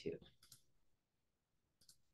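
Near silence with a faint, short click near the end, as the presentation advances to the next slide.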